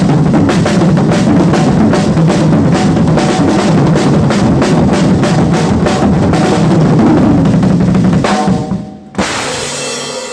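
Acoustic drum kit played fast and loud in a drum solo: a dense run of snare and bass drum strokes that dies away about eight seconds in. One more hit follows about a second later and rings on to the end.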